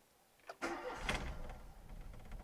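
Volkswagen Golf Mk1 engine started with one turn of the key, heard from inside the cabin: a click about half a second in, then the starter turns and the engine catches and runs with a steady low rumble.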